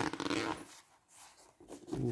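Zipper on the side pocket of a padded fabric fishing-rod case being pulled open: a quick rasp of the zipper teeth in the first half-second or so, then softer rustling of the fabric flap.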